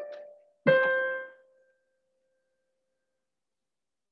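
Piano: one note sounds, then about a second in a louder, slightly lower note is struck and rings out, fading away within a second.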